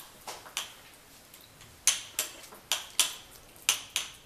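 Metal spoon tapping and clinking against a small drinking glass as a layer of carrot halwa is pressed down inside it: a string of sharp, irregularly spaced taps, about eight in all.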